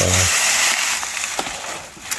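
Digging by hand in dry soil: the crunch and scrape of a small hand tool in hard earth and dry leaves, with a couple of light knocks midway. A short grunt-like voice sound at the very start.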